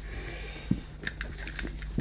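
Faint light clicks and rustles of a mains cable being handled and uncoiled over carpet, with a few small sharp ticks in the first half, over a steady low hum.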